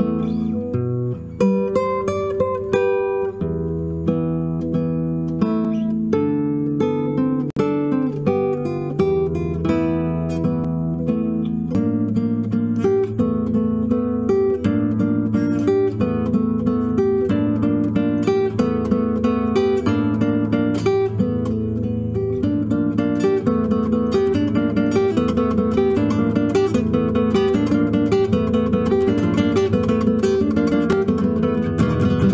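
Solo nylon-string classical guitar played fingerstyle. About twelve seconds in it settles into a fast, even pattern of plucked notes over held bass notes.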